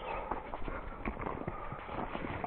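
A hiker's footsteps on a trail while walking uphill, heard as irregular light taps and crunches.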